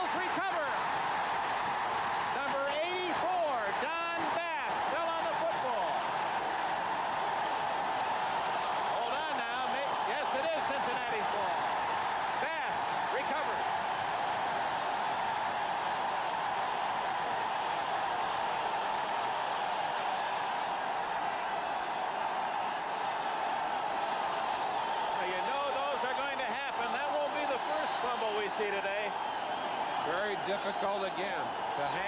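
Stadium crowd cheering in a steady roar, with shouted voices rising out of it now and then.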